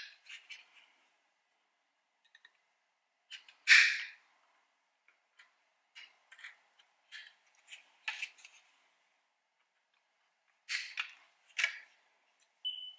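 Plastic clicks and rattles from a car door's power-window switch unit and its plastic trim bezel being handled and worked out of their clips: scattered sharp clicks, the loudest about four seconds in, and two more near the end.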